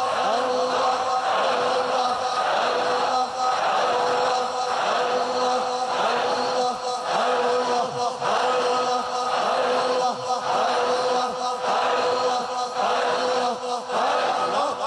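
Men chanting zikr together in unison on one steady pitch, repeating a short phrase in a regular pulse about once a second.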